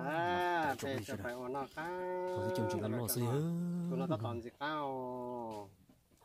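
A man talking in Hmong, stretching several vowels into long, held exclamations.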